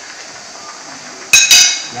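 Spaghetti boiling in water in a metal frying pan with a steady bubbling hiss, then two quick, loud metallic clinks with a brief ring, a metal utensil striking the pan, about a second and a half in.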